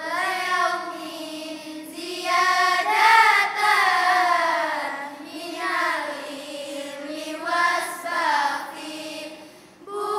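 A group of girls chanting a nadhom, Arabic didactic verse, in unison without instruments, in long melodic phrases that swell and fall, with a short pause for breath near the end.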